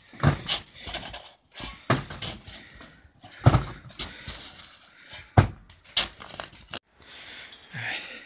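Metal snow shovel chopping and scraping into hard-packed, frozen snow on a corrugated roof, in about nine short, sharp strokes at irregular intervals.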